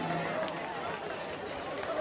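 The last note of the live band dies away at the very start, leaving the chatter of a large crowd standing about in the open: a murmur of many overlapping voices.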